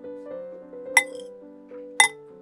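Metal spoon clinking against a glass mixing bowl, two sharp strikes about a second apart, over soft piano music.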